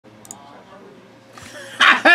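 Faint steady room hum with a small click, then near the end the loud, breathy start of a man's shouted greeting "Hey".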